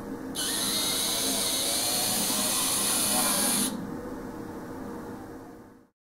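A Z-scale model locomotive's tiny electric motor running under shuttle-train control, a high whirring that starts suddenly and cuts off after about three seconds, with a faint pitch rising and falling as the speed changes. The sound fades out near the end.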